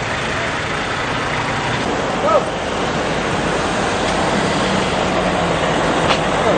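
Traffic noise from vehicles driving past: a steady, even rush of engine and tyre sound.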